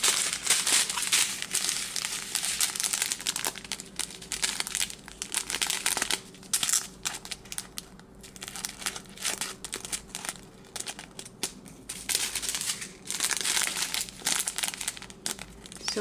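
Small clear plastic bags of diamond-painting resin drills crinkling as they are handled and worked apart, in irregular spells with short quieter gaps.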